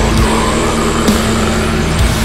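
Heavy metal music: a dense wall of distorted guitars over fast, driving drums, with one steady note held underneath.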